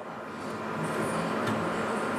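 Steady mechanical hum and hiss that grows slowly louder over the first second and then holds.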